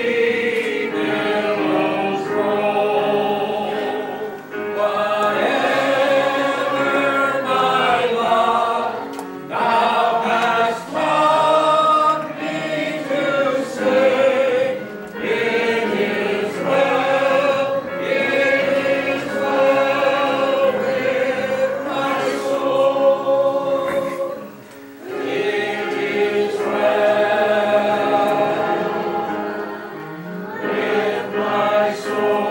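Church congregation singing a hymn together, many voices holding long phrases with brief breaks between the lines.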